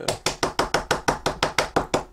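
A 20-year-old navy blue dye ink pad tapped rapidly onto a wood-mounted rubber stamp to ink it: rapid, even taps, about seven a second. The pad's foam is crumbling with age.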